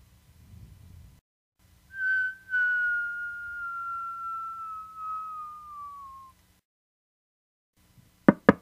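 A long whistle, starting about two seconds in with a brief break, gliding slowly down in pitch for about four seconds: the cartoon sound of a hit aircraft falling.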